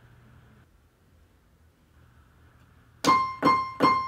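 Digital piano: after about three seconds of near silence, three separate notes are struck one after another in the last second, played by the left hand alone.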